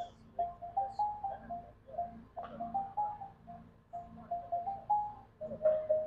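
Marimba played softly with mallets: a run of short single notes, several a second, in phrases broken by brief pauses.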